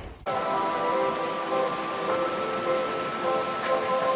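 Background music: soft sustained synth chords with a steady haze beneath, coming in about a quarter second in.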